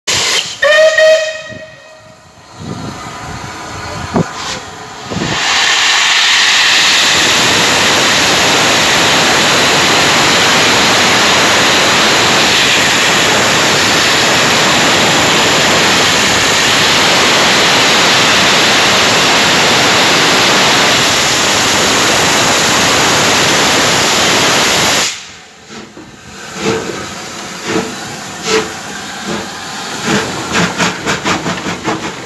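Merchant Navy class steam locomotive 35018 'British India Line' sounding a short whistle, then a loud, steady hiss of steam blowing off for about twenty seconds that cuts off suddenly. Near the end come a few short, evenly spaced beats as the engine moves.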